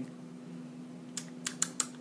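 A steady low mechanical hum in the room, with a quick run of about six small sharp clicks in the last second.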